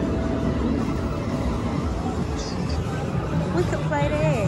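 Steady din of a busy indoor game arcade: crowd babble mixed with electronic game-machine sounds, with a brief steady beep-like tone at the start and short gliding tones near the end.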